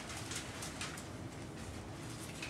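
Thin Bible pages being leafed through by hand: a run of soft, quick paper rustles and flicks over a low room hum.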